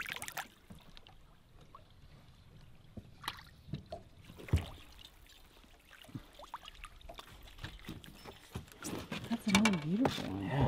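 Small water splashes and scattered light knocks as a landing net is dipped into the river and a fish is netted and lifted against the side of a boat, with one sharper knock about four and a half seconds in. A voice comes in near the end.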